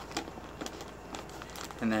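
Gallon Ziploc bag crinkling in the hands as it is held over the rim of a clear plastic container: a few scattered light crackles.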